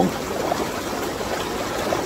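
Hot tub's air bubbles churning the water: a steady, even rush of bubbling.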